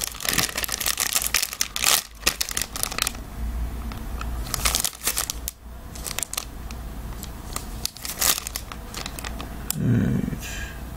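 Foil trading-card pack wrapper crinkling and tearing as it is opened, with cards rustling in the hands. The crinkling is dense for the first few seconds, then comes in scattered bursts.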